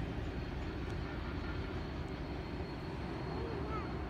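CSX coal train's hopper cars rolling away along the track, a steady low rumble.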